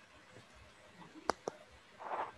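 Two quick computer mouse clicks, a double-click about a fifth of a second apart, over faint room hiss.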